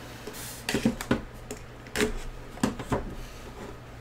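Hands opening a cardboard trading-card box and handling its inner case: a short sliding rasp, then a series of about six light knocks and taps as the packaging is lifted out and set down.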